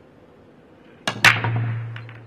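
Break shot in Chinese eight-ball: the cue tip strikes the cue ball about a second in. A moment later comes a loud crack as the cue ball smashes into the racked balls, then a clatter of balls scattering, which fades into a low rumble.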